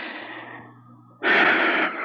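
A sharp, breathy intake of breath, a gasp, about a second in, following a short trailing-off pause in a dramatic recording.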